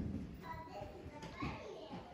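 Faint murmur of voices, children's among them, in a hall.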